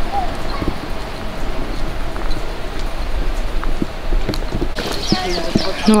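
Footsteps on a paved lane, an irregular run of short clicks from walking. Near the end, small birds chirp.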